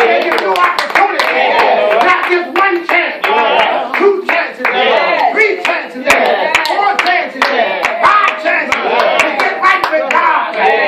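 Church congregation clapping by hand, in irregular claps, while several voices call out over it.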